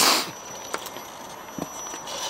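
A 2.2-scale RC rock crawler working its way over rocks: a few faint clicks and scrapes of its tyres on stone. A short loud rush of noise comes right at the start.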